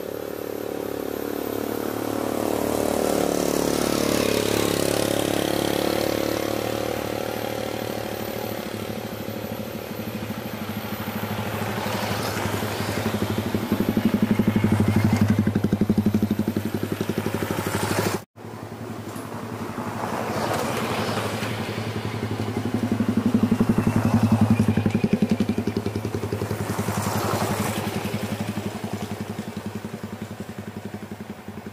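Small motorcycles riding past on a concrete road. Each engine note swells as it approaches and fades as it goes, three times, with a sudden drop about two-thirds of the way through.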